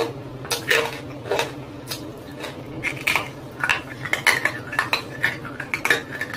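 Close-miked crunching and chewing of a hard, brittle roasted lump held right at a lavalier microphone. The crunches are sharp and irregular, about one or two a second, with a faint low steady hum beneath.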